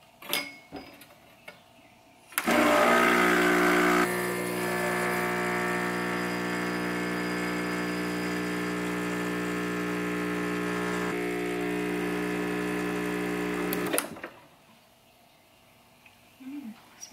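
Espresso machine pump buzzing steadily as it pulls a double shot into two glasses. It starts about two and a half seconds in, is louder for its first second and a half, then settles to an even hum and cuts off abruptly about two seconds before the end. A few light clicks come before it, as the glasses are set in place.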